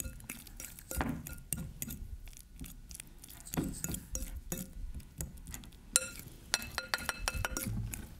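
Metal fork mashing avocado in a glass mixing bowl, clicking and scraping against the glass in irregular strokes. About six seconds in a sharper clink leaves the bowl ringing briefly, followed by a few more clinks.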